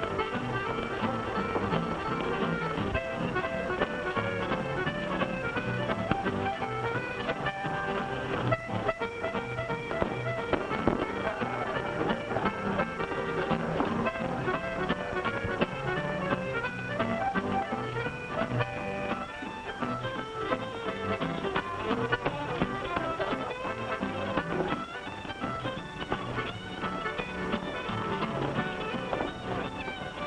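Upbeat dance-band music with a steady beat, played for dancing.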